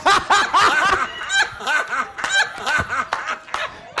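Laughter in quick repeated bursts, several a second, easing off near the end.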